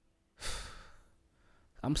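A man sighs into a close microphone about half a second in: a short breathy rush that fades within half a second. His speech starts near the end.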